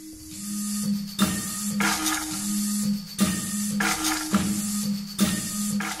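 Robotic acoustic instruments playing under computer control: a low steady tone that stops and restarts, with short noisy mechanical strikes about once a second, machine-like.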